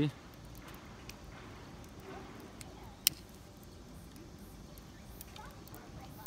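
Quiet outdoor background with faint voices, and one sharp click about halfway through from a disposable lighter being struck.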